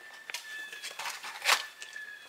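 Crinkling and rustling of a toy's packaging being unwrapped by hand, with a louder crackle about one and a half seconds in.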